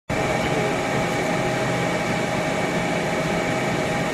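A steady mechanical drone with hiss and a few faint held tones, unchanging in level.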